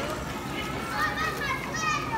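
Young children's high-pitched voices calling and chattering over the general noise of many children playing.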